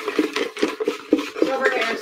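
Folded paper slips rattling and rustling in a container as a hand stirs through them to draw one, a quick, irregular clatter.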